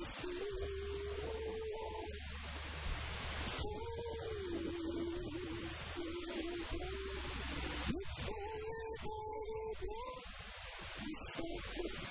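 A woman singing a slow song with long held notes that glide between pitches, accompanied by her own acoustic guitar.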